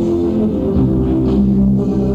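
Rock band playing live, with guitar to the fore: held notes over a steady bass and drum backing.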